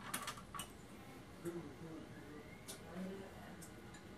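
A quick cluster of clicks as the button on a desktop computer tower is pressed to reboot it, followed by a couple of faint isolated ticks.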